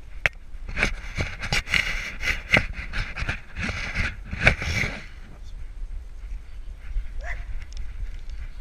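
Golden retriever panting in quick, rough breaths, about three a second, heard right up close, with a steady low rumble of wind and camera movement underneath. The panting stops about five seconds in.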